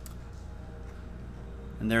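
Quiet room tone with a steady low hum, then a man starts speaking near the end.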